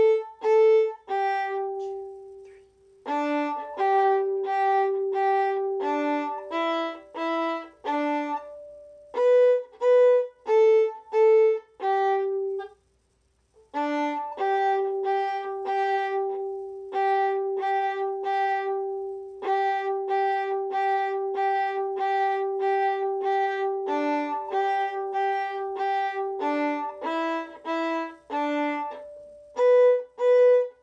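Solo violin playing a simple beginner method-book exercise: short separate bowed notes mixed with long held notes, with a pause of about a second near the middle.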